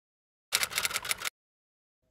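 Keyboard typing sound effect: a quick burst of rapid key clicks lasting under a second, about half a second in, set against dead silence.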